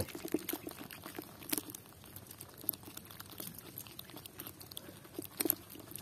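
Faint, irregular wet squelches and clicks of a hand groping through soft mud inside a fish burrow in a canal bank, with a couple of sharper pops.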